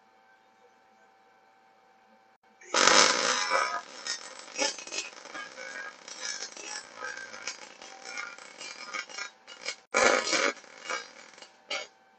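MIG/MAG welding arc crackling and spitting as a vertical-up (3G) bead is run on 4.7 mm plate. The arc strikes about three seconds in, loudest at the strike, breaks off briefly near ten seconds, restrikes, and stops just before the end.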